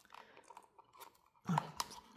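Faint scattered clicks and light crackling of hands handling a wearable breast pump's clear plastic collection cup, with a sharper click near the end.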